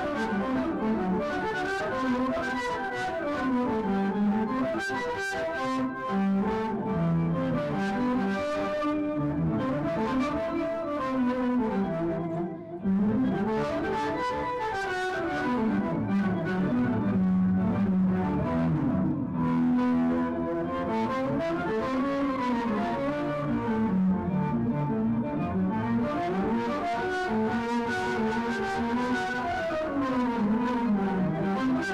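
Electric guitar played through an Electro-Harmonix POG2 polyphonic octave generator pedal and an Electro-Harmonix amplifier: a flowing, legato single-note melody gliding up and down, with octave-doubled tones layered over the notes.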